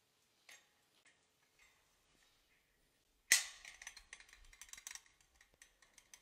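Metal clicks from a gilded monstrance being handled on the altar: a faint click early, then a sharp metallic clack with a brief ring a little past three seconds in, followed by a run of small clicks and rattles as its glass case is opened.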